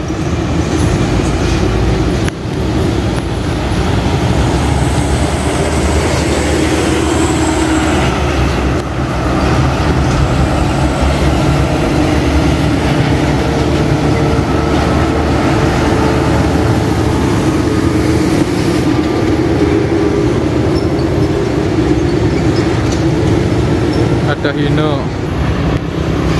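Heavy diesel trucks running past close by in steady road traffic: a continuous engine drone and tyre rumble.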